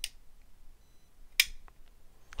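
Quartermaster QTR-11 TT flipper knife's blade and linkage mechanism being flipped open while the knife is held upside down. There are two crisp metallic clicks, one at the start and a sharper, louder one about a second and a half in, with a few faint ticks between. The blade ends up open but not fully locked up.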